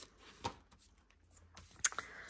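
Small craft scissors cutting tape, a short sharp snip about half a second in, then faint rustling of paper and the tape roll and a sharp click near the end as the scissors are set down on the desk.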